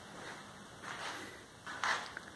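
Quiet room tone with two brief soft rustling noises, a faint one about a second in and a louder, sharper one near the end.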